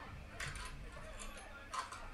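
A knife scraping and prying at an oyster shell, faint, in three short strokes.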